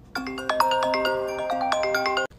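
iPhone ringtone playing for an incoming call: a melodic run of bright, chiming notes that starts a moment in.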